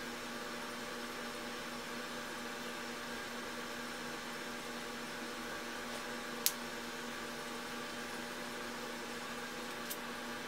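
Steady background hum and hiss with a constant low tone, unchanging throughout, and one sharp click a little past halfway.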